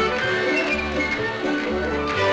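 Lively square-dance band music: a fiddle-led tune over a low bass note that repeats about twice a second.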